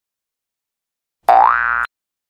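A short cartoon sound effect, a boing-like tone whose pitch rises, starting a little past a second in and cut off abruptly after about half a second.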